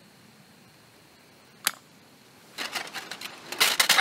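Small metal camp stove being handled and lit: a single sharp click, then from about halfway in a quick run of scratchy clicks as an Esbit solid-fuel tablet inside a metal windscreen is lit and catches.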